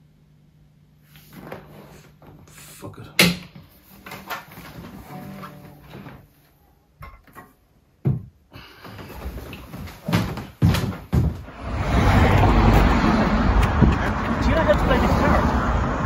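A few hesitant plucks and scrapes on an electric guitar, then several knocks as it is put down. About twelve seconds in, steady street noise with passing traffic and voices takes over.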